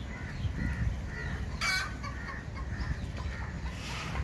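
Chickens clucking: a run of short, soft calls with one sharper, brief squawk a little under halfway through, over a steady low rumble.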